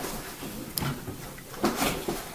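Permanent marker scratching across paper in short strokes as a drawing's feet are inked, with a small sharp click about a second in.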